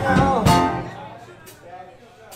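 Live band of electric guitars and a drum kit, with a hard accented hit about half a second in, after which the sound dies away to a fading ring.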